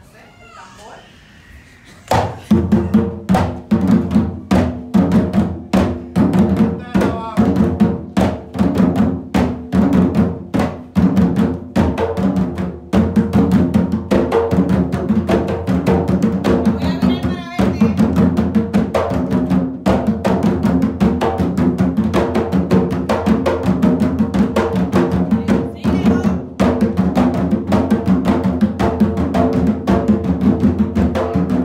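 Bomba barrel drums (barriles) played by hand, coming in about two seconds in and then running on as a fast, driving Yubá rhythm of dense strokes.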